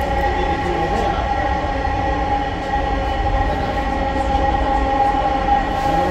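Metro train running at speed, heard from inside the passenger car: a steady low rumble with a steady whine of several tones on top.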